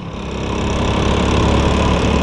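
Motorcycle engine running as the bike is ridden along the road, with wind and road noise, growing louder over the first second and then steady.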